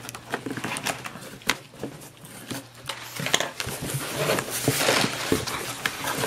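A taped cardboard shipping box being torn open by hand: a run of short sharp rips and knocks, then denser cardboard rustling through the second half as the flaps are pulled open.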